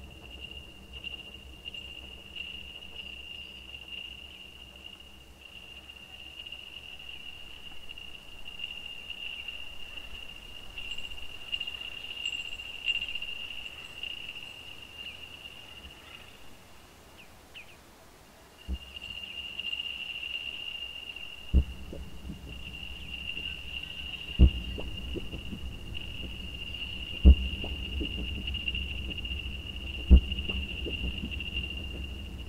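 Live electronic synthesizer music: a steady, slightly wavering high tone over a faint low drone. The high tone breaks off briefly about two-thirds through, then a low rumble comes in with four deep thumps in a slow pulse, about three seconds apart.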